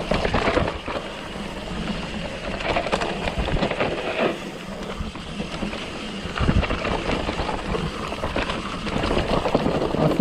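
Mountain bike riding down a loose rocky trail: tyres crunching over stones and the bike rattling with many short knocks over the rough ground.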